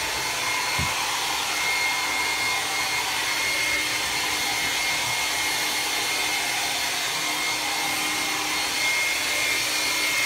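Handheld hair dryer running steadily as it blows into a Saint Bernard's thick coat: a constant rush of air with a thin, steady whine over it.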